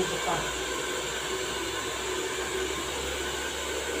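Hand-held hair dryer blowing steadily at an even level.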